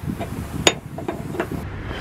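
Steel open-end wrench clinking against the brass flare fitting of a copper propane line as the fitting is loosened: one sharp metallic click with a short ring about two-thirds of a second in, and a few lighter taps.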